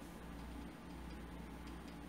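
Faint room tone in a pause of the recording: a steady low hum with light background hiss.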